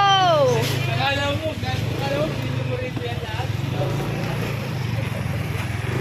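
Motorcycle engine running steadily at riding speed, a constant low drone under road and wind noise.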